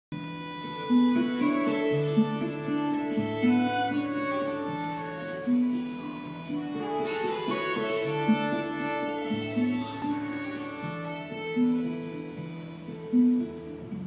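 Live acoustic band with fiddle, double bass and guitars playing a slow instrumental tune of long held notes, heard through the stage PA.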